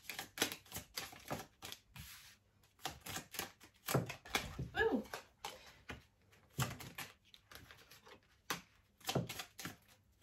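A deck of Lenormand cards being shuffled by hand: a stream of quick, uneven clicks and slaps as the cards hit against each other.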